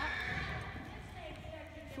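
Hoofbeats of a ridden horse moving at a fast gait.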